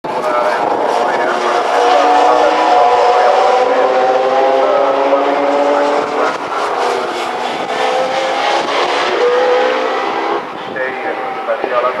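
Racing car engines running hard on the circuit, their pitch falling slowly as a car passes by. A second car's engine follows after a break about halfway and grows quieter near the end.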